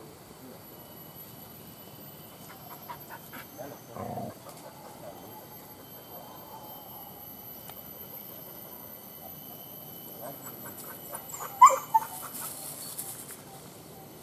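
Hunting dogs whimpering and yipping faintly, with a few sharp clicks near the end.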